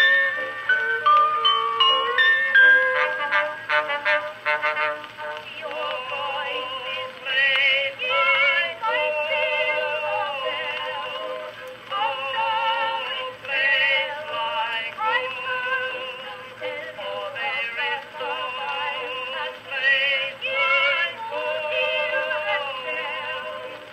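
A 1912 Edison Blue Amberol cylinder of a soprano-and-tenor song with orchestra, played on a 1915 Edison Amberola 30 phonograph, with a thin, narrow-range sound. An orchestral passage gives way, about six seconds in, to singing with strong vibrato that runs on in phrases.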